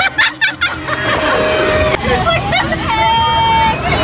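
A woman screaming on a roller coaster: two long held screams, one about a second in and a stronger one near the end.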